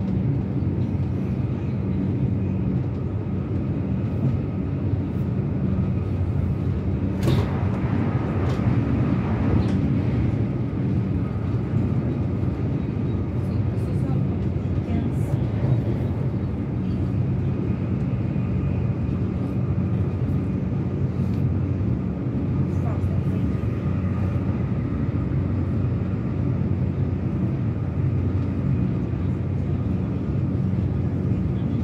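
Cabin noise of an electric commuter train running at speed: a steady low rumble of wheels on the rails with a constant motor hum, and a few light clicks and rattles about a third of the way in.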